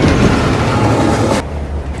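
Passenger train rushing past: a loud rush of rail noise starts suddenly, cuts off about one and a half seconds in, and leaves a lower rumble.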